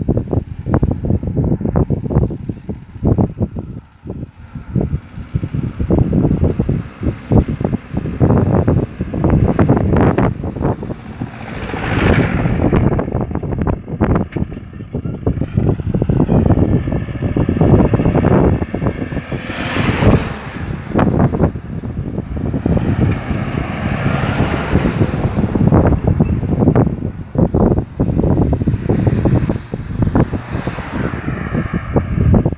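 Wind buffeting hard on the microphone, with a few road vehicles driving past, each swelling up and fading away; one passing engine gives a brief whine that rises and falls near the middle.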